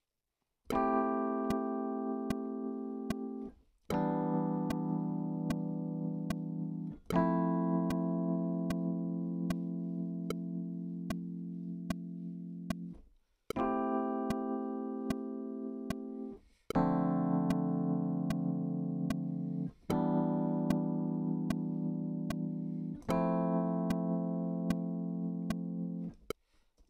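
Keyboard chords, each held about three seconds and slowly fading, played as a chord progression over a steady metronome click of about two to three ticks a second, while being recorded into the DAW.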